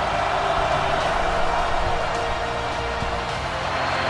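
Stadium noise during a televised football game: a steady crowd roar with music playing under it.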